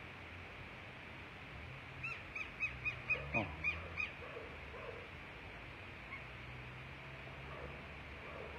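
Southern lapwing (quero-quero) giving a rapid series of about eight sharp, shrill calls, roughly four a second for two seconds: the anxious alarm calling of the parent birds near their chick trapped in a storm drain.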